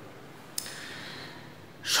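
A man's faint breath drawn in between phrases, with a small click about half a second in just before it.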